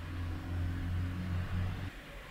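A low, steady hum that stops suddenly near the end.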